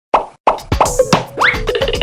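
A quick series of cartoon-style plop sound effects, about six in the first second, each dropping in pitch. A short rising whistle-like glide follows, with light music underneath.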